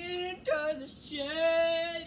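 A child's voice singing three notes: two short ones, the second a little lower, then a last one held steady for nearly a second.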